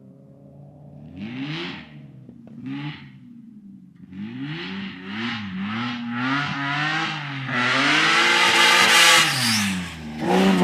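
BMW 3 Series (E36) rally car's engine revving hard on a gravel stage, the pitch climbing and dropping again and again as the driver works the throttle and gears. It is faint at first and grows much louder from about halfway through as the car closes in, with a rushing hiss on top that is loudest in the last couple of seconds, then dips just at the end.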